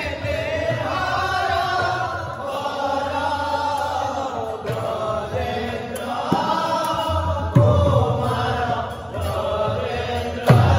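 A group of men singing a devotional chant together, amplified through microphones. A hand drum strikes a few loud, sharp beats in the second half.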